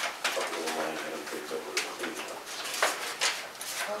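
Low, indistinct talk in a small room, punctuated by several sharp clicks.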